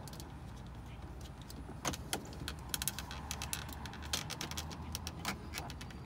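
Plastic dashboard trim strip and its clips being handled and pushed back into place with a plastic pry tool: a run of sharp plastic clicks and knocks, coming thick and fast from about two seconds in.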